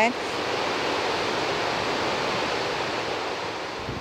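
Water rushing steadily through the open spillway gates of the Afobaka Dam as it releases excess water from an over-full reservoir. The sound eases slightly near the end.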